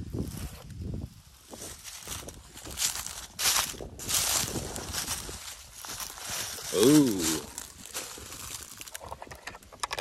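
Footsteps crunching through dry fallen leaves, several steps about a second in through about six seconds in. About seven seconds in, a short voiced exclamation.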